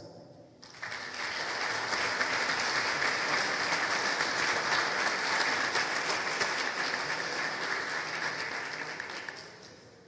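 Audience applauding. It starts suddenly about a second in, holds steady, and dies away near the end.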